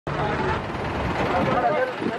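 Several people talking at once, with the low steady sound of a vehicle engine running underneath.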